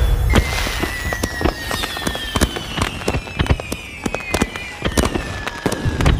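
Firecracker crackling in a film teaser's soundtrack: dense, sharp cracks over a thin high tone that falls slowly in pitch.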